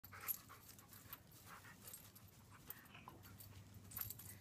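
Faint panting of a dog at play, a soft breathy rhythm of a few breaths a second.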